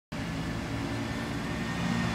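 Diesel engine of a MAN single-decker bus running as it approaches, a steady low hum that grows slightly louder.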